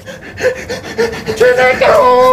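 A man laughing in short vocal bursts, about four a second, growing louder near the end.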